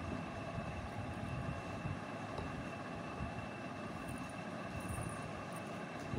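Steady background hum with a faint, constant high-pitched whine, and a few faint handling sounds between about four and five and a half seconds in.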